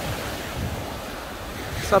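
Small waves breaking and washing up the sand in a steady hiss, with wind buffeting the microphone in low rumbles. A man's voice starts right at the end.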